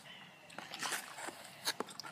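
Plastic measuring spoon scooping baking soda from a cardboard box: a few short scrapes and taps, the clearest near the middle and shortly before the end.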